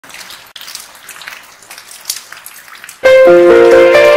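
Rain pattering for about three seconds, with many small drop ticks. Then keyboard music starts abruptly and much louder, playing held notes that climb step by step.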